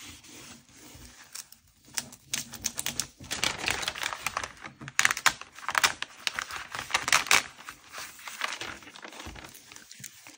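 Duck Brand clear peel-and-stick shelf liner being peeled slowly off its paper backing and pressed down by hand: a dense run of rapid crackling clicks, busiest through the middle seconds.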